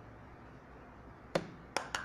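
Three short, sharp clicks in quick succession in the second half, the first the loudest, over faint room tone.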